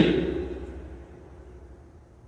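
A pause in a man's lecture: his voice trails off at the start, then faint room tone.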